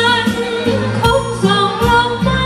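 A woman singing a Thai luk thung song with instrumental accompaniment, her held notes wavering with vibrato.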